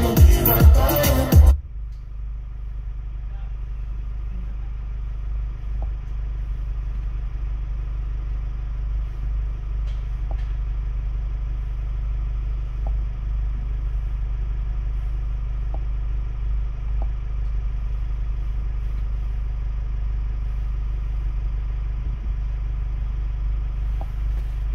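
Music cuts off suddenly about a second and a half in. From then on a Ford Transit Custom van's engine idles with a steady low rumble, heard inside the cab, with a few faint ticks now and then.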